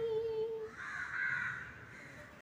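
A woman's solo singing voice holds the last note of a song and fades out in the first second. Then comes a short, harsh, rasping sound without a clear pitch, lasting about a second.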